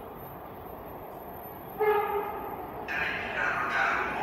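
MARTA rapid-transit train arriving at an underground station: one short horn blast just before the midpoint, then the noise of the approaching train rising in the last second or so.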